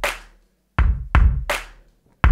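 A hand-drum beat: dry knocking hits with a deep thud, one at the start and three more in quick succession from a little before halfway, each dying away fast, with dead silence between.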